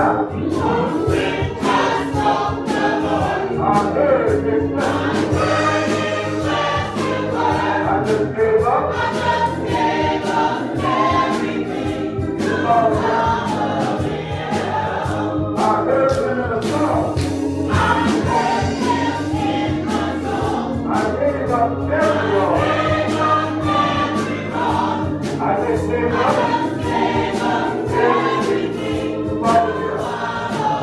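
Gospel song sung by several voices with organ and beat accompaniment, continuing without a break.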